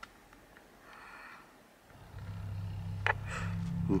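Faint room tone, then a steady low hum comes on about halfway through and holds without wavering, with a single soft click near the end.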